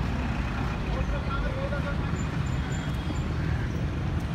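Steady rumble of passing road traffic, with faint voices in the background.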